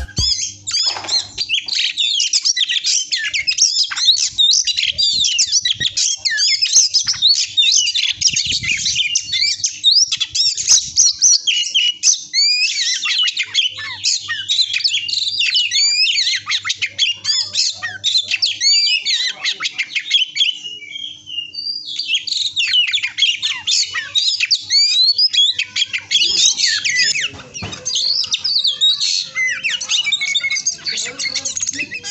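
Oriental magpie-robin (kacer) singing on and on in a fast, varied stream of whistles and harsh notes, breaking off briefly about two-thirds of the way through. The bird is in heavy moult, missing its wing and tail feathers, yet still in full song.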